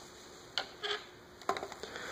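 A few light clicks and knocks with soft rubbing: a lightweight foam model plane being handled and set down on a table.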